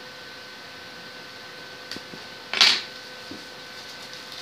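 A short, loud crinkling rustle of plastic packing wrap being pulled apart, about two and a half seconds in, with a faint click shortly before and a smaller rustle after, over a faint steady electrical hum.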